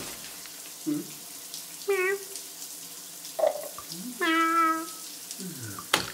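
Water running steadily into a bath as a constant hiss, with a handful of short vocal calls over it: a wavering one about two seconds in, a longer held one about four seconds in, and a falling one near the end.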